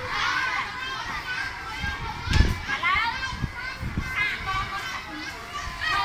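A group of children chattering and calling out, many high voices overlapping, with a low thump about two and a half seconds in.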